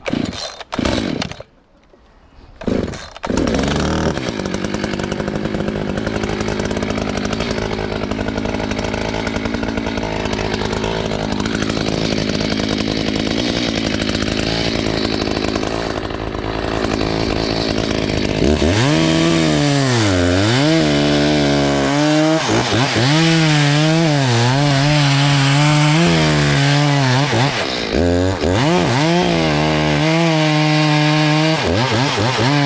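Two-stroke chainsaw: a few short bursts at first, then running steadily. In the last third its engine pitch dips and recovers again and again as the chain bites into the base of a larch trunk.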